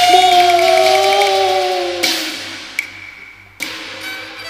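Two Cantonese opera singers hold a long note together as they call each other's names, and the note fades out about halfway. A short crash-like wash and a click follow, then a sharp percussion strike near the end as the accompaniment comes back in.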